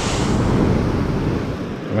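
Wind rumbling on the microphone, mixed with surf breaking on a shingle beach; the noise swells about half a second in and eases slightly near the end.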